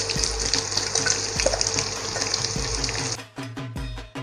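Sliced onions sizzling as they fry in hot mustard oil in a kadai, a steady hiss that cuts off abruptly about three seconds in. Background music with a steady beat takes over near the end.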